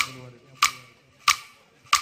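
Sharp percussion strikes, four of them evenly spaced about two-thirds of a second apart, keeping the beat of Arabic dabke music on their own between the singer's phrases, with the end of a sung phrase fading out at the start.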